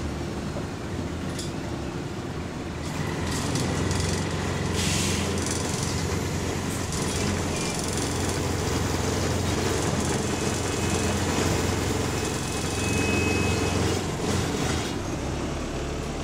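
Bus engine and running noise heard from inside the passenger cabin: a steady low drone that grows louder about three seconds in, with occasional short rattles and knocks from the bodywork and fittings.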